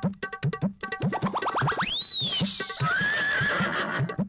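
Comic film background music with steady drum beats, about four a second. About a second in, a quick run of rising zips leads into a cartoon boing-like swoop that rises and falls. A short wavering tone follows.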